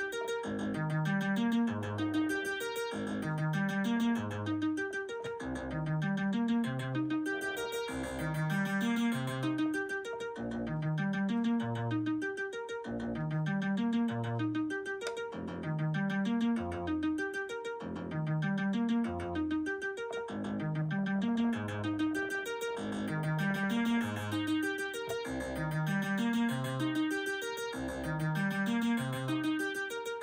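Synthesizer playing an arpeggiated pattern from a MIDI keyboard: notes climb in steps from a low bass note, and the figure repeats about every two seconds.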